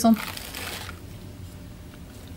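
Soft rustling and scraping as hands press metal cookie cutters down through a tray of brownie on baking paper, fading out after about a second.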